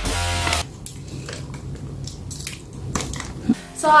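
Electronic backing music that stops about half a second in. It is followed by soft, scattered squishing and clicking as sticky cleaning slime is pressed onto and pulled off a plastic computer mouse.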